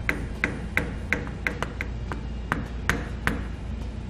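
A hammer tapping a flathead screwdriver against the locking tabs beside a trailer axle's spindle nut, bending them clear so the nut can be turned off. About ten sharp metal taps, irregularly spaced.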